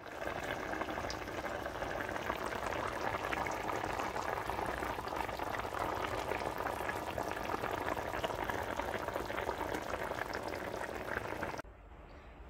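Pot of thick beef and potato curry boiling hard: a steady, dense bubbling with fine crackles, which cuts off abruptly near the end.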